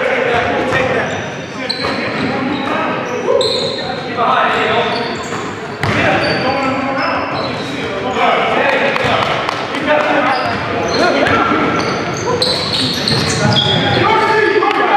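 Sounds of a basketball game on a hardwood gym floor: many short, high sneaker squeaks, the ball bouncing, and players' voices calling out, all echoing in the large hall.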